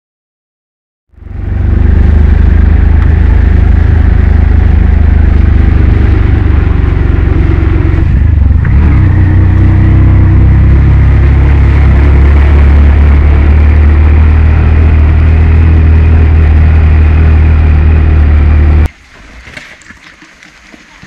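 Auto-rickshaw engine running loud and steady, heard from inside the cab while it drives, with a brief dip about eight seconds in. It starts suddenly after a second of silence and cuts off sharply near the end, giving way to quieter outdoor sound.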